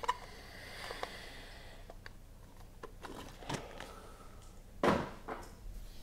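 Trading cards being handled on a tabletop: a soft rustle of cards sliding in the first couple of seconds, a few light clicks, and one louder knock about five seconds in as cards are set down or squared on the table.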